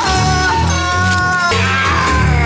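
A man's long wailing, howl-like cry over horror-film music with a pulsing low bass line. The cry slides slowly down in pitch, breaks off about three-quarters of the way through, and starts again higher.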